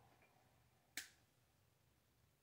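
Micro red dot sight's switch clicking once, sharply, about a second in; otherwise near silence.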